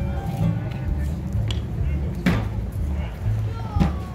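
Live string band playing an instrumental passage: a walking double bass line under mandolin and guitars, with people talking nearby and two sharp clicks, one about midway and one near the end.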